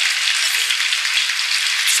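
Studio audience applauding steadily after a contestant's answer is ruled correct.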